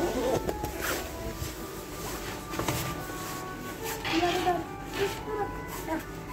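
Store background music playing, with the rustle of a child's padded winter jacket being taken off. A child's voice sounds briefly about two-thirds of the way in.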